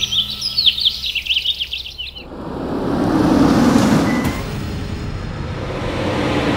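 Small birds chirping in quick, repeated calls for about two seconds, then a broad rushing noise of a car driving that swells about three seconds in and eases to a steady level.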